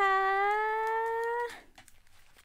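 A woman's voice drawing out the final Thai polite particle "kha" as one long held note, rising slightly in pitch, for about a second and a half. After it, faint rustling as headphones are put on.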